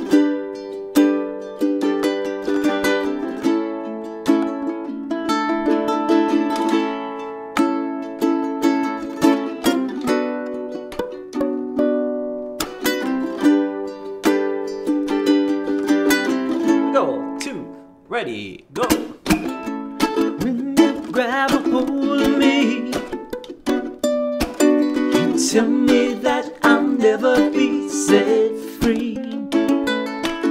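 Cutaway acoustic ukulele strummed in a steady groove through an A, Bm7, G, A chord progression, down-up strums with muted chunks. About two-thirds of the way through the strumming breaks off briefly with a short falling glide, then resumes more busily.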